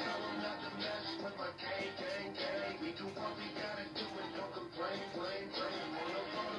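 Film soundtrack music playing through a television's speakers, picked up in the room.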